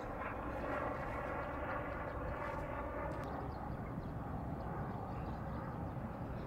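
Steady distant drone of a passing vehicle, easing off in the second half, over a low outdoor rumble.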